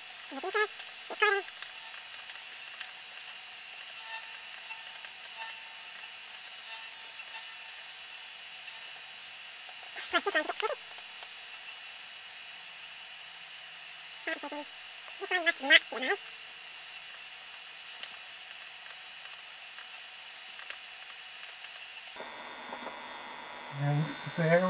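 Steady hiss carrying several faint, high, steady tones, broken by a few short pitched chirp-like sounds: two right at the start, one about ten seconds in, and a quick cluster around fifteen seconds.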